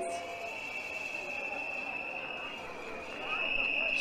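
Faint background murmur of a crowd in an open square, with a steady high-pitched whistle-like tone held throughout that grows a little louder near the end.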